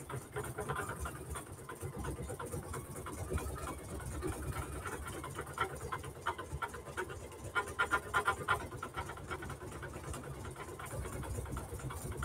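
PFAFF computerized embroidery machine stitching out a design: a fast, even run of needle strokes with the hum of the machine running.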